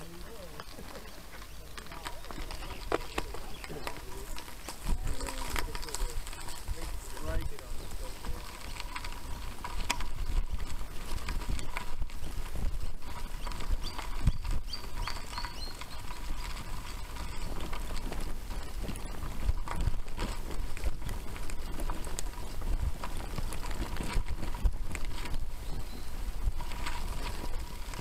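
Irregular rattling and knocking from a bicycle and its handlebar-mounted camera jolting over a rough gravel and dirt trail, with a steady low rumble of wind and tyres underneath.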